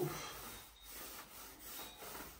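Paint roller on an extension pole rolling over a painted wall, a soft rasping rub that swells and fades with each up-and-down stroke.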